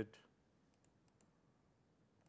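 A few faint, short clicks from the laptop about a second in, as the presenter clicks through the Calculator's View menu; otherwise near silence with room tone.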